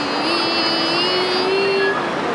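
A voice holding one long note that rises slowly in pitch and breaks off just before the end.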